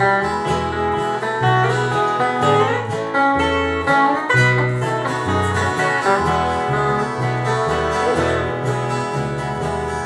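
Small country band playing an instrumental break: an electric bass alternating between two low notes about every half second under strummed acoustic guitar and guitar lead lines.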